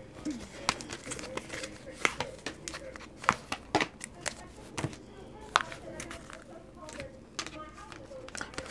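Oracle cards being handled on a tabletop: an irregular series of light taps, clicks and short rustles as cards are picked up, slid and laid down.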